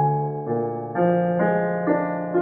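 Casio Celviano digital piano playing a slow nocturne: bass notes enter at the start under sustained melody notes, with new chords struck about every half second.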